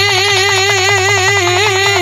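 Bhojpuri birha music: a male voice holds one long sung note over a steady drum beat.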